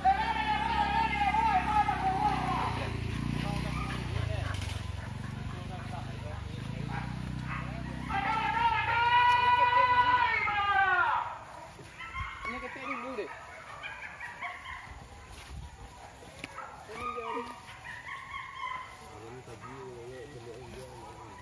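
Men's long, drawn-out shouted calls: one at the start, then a louder held call from about eight to eleven seconds that rises and falls in pitch, over a low rumble. Shorter, quieter calls follow.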